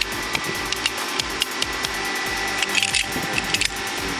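Scattered metallic clicks and scrapes as a pipe wrench is set and worked on a seized threaded valve, heaviest in bursts past the middle, over a steady background hum.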